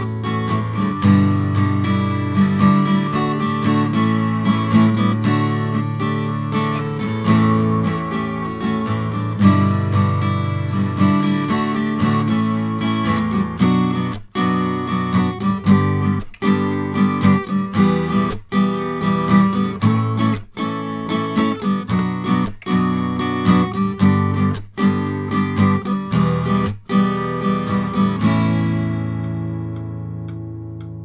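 Electroacoustic guitar with a Planet Waves O-PORT cone fitted in its soundhole, strumming chords, heard through a microphone. From about halfway through, the strumming breaks off briefly about every two seconds, and near the end a last chord rings out and fades.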